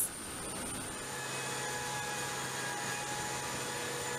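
Steady aircraft turbine noise from a C-5 on the ground: a constant rush of air with a whine of several steady tones, and a low hum that comes in about a second in.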